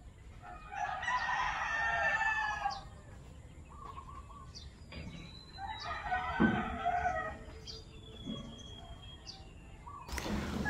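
A rooster crowing twice, each crow lasting about two seconds, with faint high bird whistles in between.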